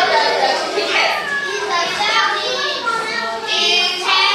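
Many children's voices talking and calling out at once in a classroom, an overlapping chatter with no pause.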